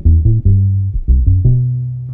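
Baby bass (electric upright bass) plucked: a short phrase of low, deep notes, about five in quick succession, ending on a higher note held for about half a second.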